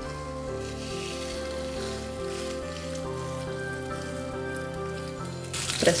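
Background music with steady notes over a faint sizzle. About five and a half seconds in, a loud sizzle as a seasoned raw tuna steak is pressed onto a hot oiled grill pan.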